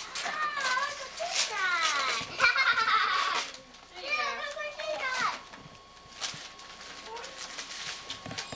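Young children's voices: high-pitched excited squeals and babbling with sliding pitch, busiest in the first half and trailing off later, over a faint steady high tone.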